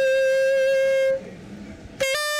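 Saxophone holding one long, steady note that stops a little past a second in, leaving a quiet gap.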